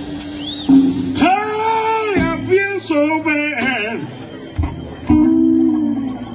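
Live blues band playing: an electric guitar lead with bent, held notes and wavering vibrato over bass, drums and Hammond organ.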